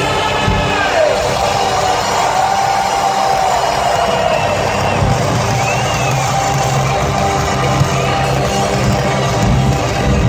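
Loud live industrial metal band playing in a large arena, heard from within the crowd, with the audience cheering and whooping over it.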